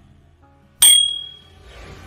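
A sharp click about a second in, followed by a bright bell ding that rings out for about half a second: a notification-bell sound effect. Soft music fades in near the end.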